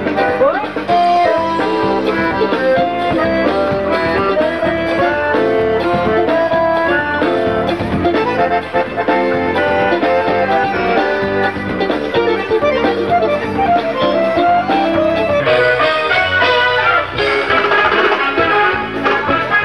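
A live band playing an instrumental passage, a busy melody line over a steady beat, with no singing.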